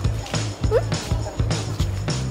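Background music with a quick, steady beat. A short rising squeak cuts in about three-quarters of a second in.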